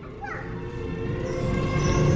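A toddler's voice answering softly in a few short sounds, over a steady background of music.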